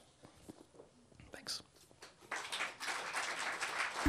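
An audience starts applauding about two seconds in, after a short hush at the end of the reading, with some voices among the clapping.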